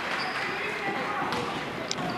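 Basketball game sounds on an indoor hardwood court: a ball bouncing, with a couple of sharp knocks, over a steady background of spectators' and players' voices.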